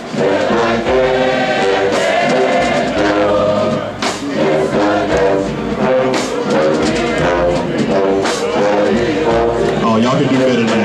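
A large group of voices singing together in chorus, a slow melody with long held chords.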